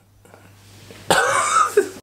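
A man coughing, a short rough burst starting just after a second in and lasting under a second.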